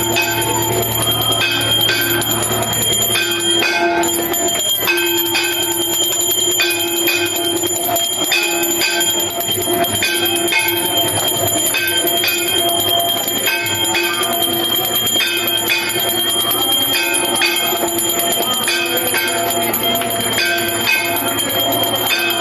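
Temple bells ringing continuously in a steady repeating rhythm for the aarti, with a sustained metallic ringing tone hanging over the strokes.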